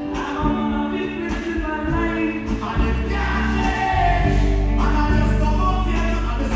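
Live band with bass, drums and keyboard playing a slow gospel-style song, a male lead vocalist and backing singers singing over it.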